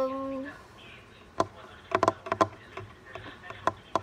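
A voice holding one sung note that ends about half a second in, followed by a scattering of short, sharp taps.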